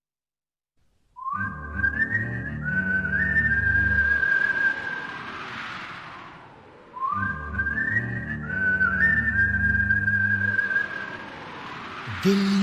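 Instrumental opening of a Bollywood film song, starting about a second in: a whistled melody steps up and holds over bass and soft backing. The same phrase is played twice.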